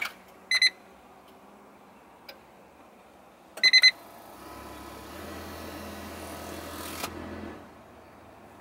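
Ignition key clicking in a John Deere 85G mini excavator's key switch, then the cab monitor's electronic warning beeps: two short beeps about half a second in and a quick run of about four near four seconds in. A low steady hum follows for about three seconds and stops shortly before the end, with the engine not yet started.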